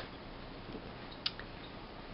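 Quiet pause holding a low steady hiss of room tone, with one faint short click just over a second in.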